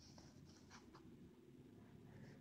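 Near silence: faint room tone with a low hum and a few soft clicks and scratchy rustles in the first second.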